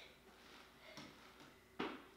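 Near silence: room tone, with a faint tick about a second in and a short breathy noise just before the end.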